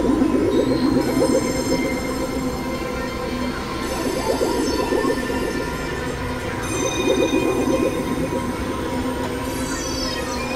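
Experimental synthesizer drone music, likely from a Novation Supernova II and a Korg microKorg XL. Dense sustained tones with a rapid flutter in the low-middle range sit under a steady mid tone, while layers of high tones change every few seconds.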